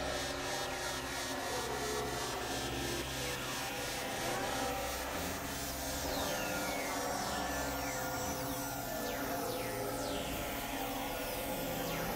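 Experimental electronic music: layered synthesizer drones with low sustained tones shifting in blocks. From about halfway through, a series of falling high-pitched sweeps runs over the drones.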